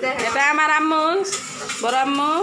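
A high-pitched voice calling out in drawn-out, wavering tones, with a few light clinks about half a second in.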